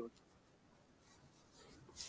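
Near silence: faint room tone in a pause between speakers on a call.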